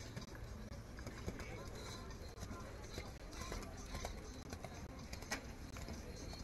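A horse cantering on arena sand, its hoofbeats coming as scattered short knocks over a background of voices.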